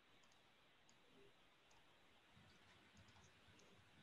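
Near silence: faint room tone with a few soft clicks scattered through it.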